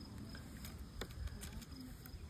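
Quiet background with a faint low rumble and a small click about a second in, from hands handling a folding toy drone and its controller.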